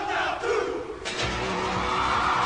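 Many men's voices chanting and calling out together in a Hawaiian hula chant over crowd noise. The voices drop out briefly about a second in, then start again loudly.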